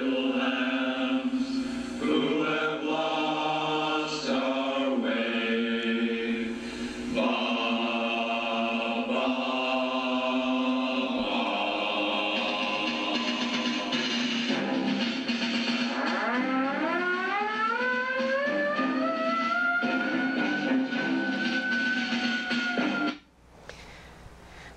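Music sound from a Model Sounds Inc. Shockwave RC sound system played through its speakers, really loud: a melody of held notes over a steady low drone, with a long tone gliding up in pitch in the last third. It is switched off abruptly about a second before the end.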